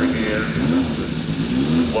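Triumph racing motorcycle engine running with the throttle blipped, its pitch rising and falling in repeated revs less than a second apart.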